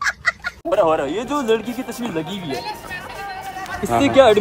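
A young child's high-pitched cackling laugh in quick, evenly spaced bursts, which stops about half a second in, followed by a voice talking with pitch rising and falling.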